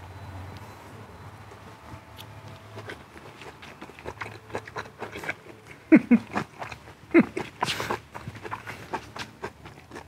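A man eating: chewing with small clicks and taps from his food and plate, and two short falling 'mmm' hums of enjoyment about six and seven seconds in, followed by a breath out.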